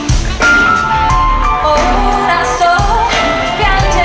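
Live pop-rock band playing with a woman singing the lead melody in long, wavering held notes over drums, bass and electric guitar.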